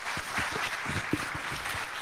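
Audience applause: many hands clapping at once.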